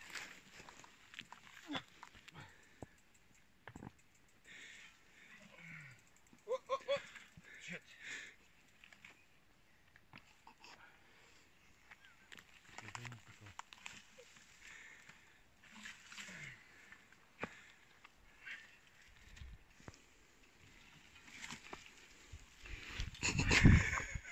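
Dry brush rustling and a mountain bike's parts clicking and rattling as it is pushed through dense scrub, with faint distant voices calling now and then. A louder low rumble comes near the end.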